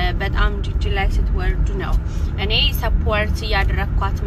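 A woman talking steadily, over a constant low rumble of car cabin noise.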